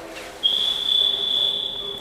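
A single steady, high-pitched electronic beep, starting about half a second in and held for about a second and a half.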